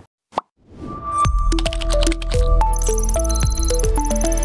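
A brief rising blip, then, from about a second in, an electronic logo jingle: deep bass under a run of quick short notes, sharp clicks and a fast glittering high ticking.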